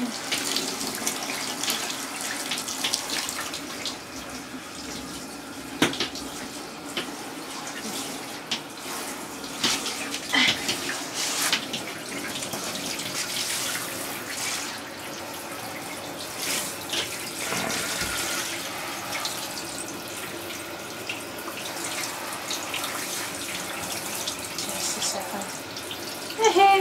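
Water spraying steadily from a handheld shower head onto a cat and the plastic shower tray, with a few short sharp knocks along the way.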